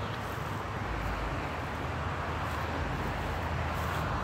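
A steady, low background rumble with no distinct events.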